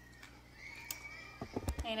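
Handling noise of a phone: a cluster of knocks and rubbing thuds on the microphone as the phone is swung round, starting about one and a half seconds in. Before that there is only a faint high thin sound over quiet room tone.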